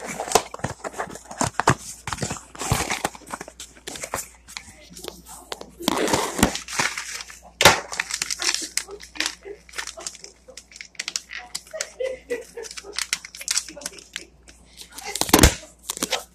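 Packaging of a refrigerant stop-leak sealant being handled, crinkling and rustling with many irregular sharp clicks. A few louder crackling bursts come about 3 s in, around 6 to 8 s, and just before the end.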